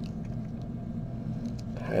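Steady low hum of background room noise, with a few faint clicks; a man's voice starts just before the end.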